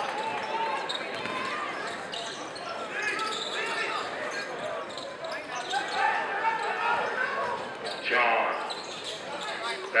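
A basketball being dribbled on a hardwood gym floor, under a steady din of crowd voices and shouts echoing in the gymnasium. There is a louder outburst about eight seconds in.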